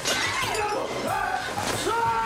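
Objects swept off a glass-topped coffee table crash and break with a sharp smash at the start, followed by a man's wordless shouting in rage.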